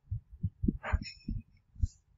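Stylus tapping and knocking on a drawing tablet, picked up by the microphone: about six soft, irregular low thumps, with a brief hiss near the middle.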